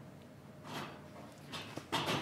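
Faint, off-microphone voices over low room tone: a word about a second in and a murmur near the end.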